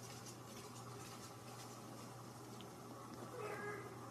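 A cat's single short meow, faint, about three and a half seconds in, after a couple of seconds of light ticking.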